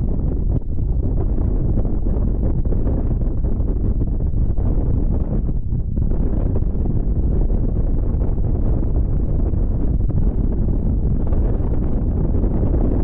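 Wind buffeting the microphone: a loud, gusty low noise that holds throughout with small dips and swells.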